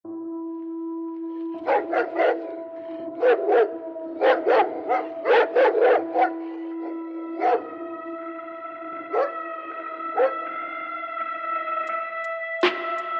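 Sampled dog barks in quick volleys of two or three, thinning to single barks, over a held synth chord in a trap beat intro. A second, higher synth layer joins about seven seconds in.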